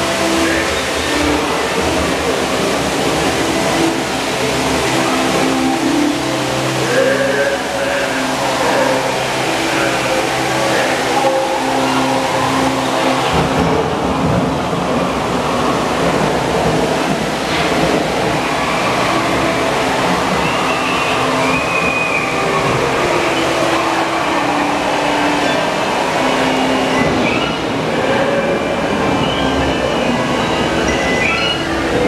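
Continuous ride ambience in the dark caverns of Disneyland's Pirates of the Caribbean boat ride: a steady rush of water and machinery noise, with sustained low tones and faint voices over it.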